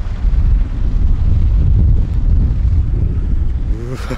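Strong wind buffeting the camera's microphone: a loud, rough low rumble with no speech over it.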